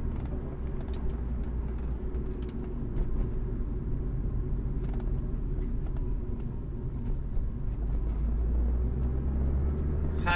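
Steady low rumble of a car's engine and road noise heard from inside the moving car.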